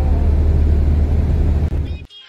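Loud, steady rumbling noise, heaviest in the low end with a hiss above it, that cuts off suddenly near the end.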